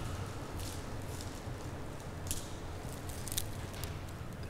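Light rustling and scattered soft clicks of a cloak's rolled flax strands knocking together as it is draped over a man's shoulders and straightened, over a steady low room hum.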